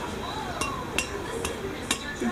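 An egg tapped against the rim of a glass blender jar to crack it: about four sharp clicks on the glass.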